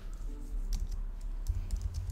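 Typing on a computer keyboard: a handful of separate key clicks as a sentence is deleted and a new one begun.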